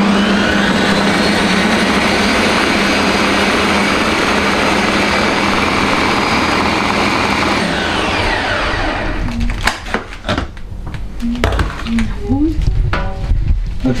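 Ninja countertop blender running at full speed, puréeing a full jar of boiled rosehips into a paste. The motor cuts out about eight seconds in and spins down with a falling whine. A few knocks and clicks follow as the jar is lifted off the base.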